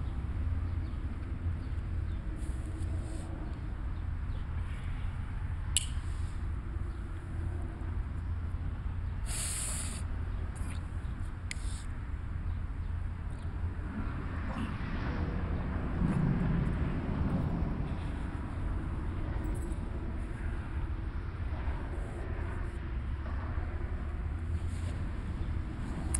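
Steady low background rumble, with a few faint short clicks and scrapes.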